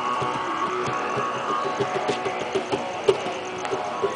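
Guitar playing in short plucked notes, with one sharp click about three seconds in.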